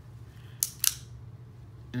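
Two sharp metal clicks about a quarter second apart from an unloaded Beretta 950B Minx .22 Short pocket pistol being handled.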